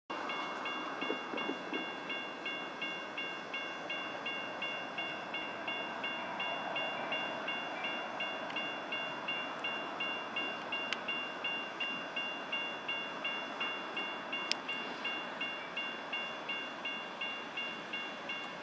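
Railroad grade-crossing warning bell ringing steadily, about two strokes a second, over a steady low rumble.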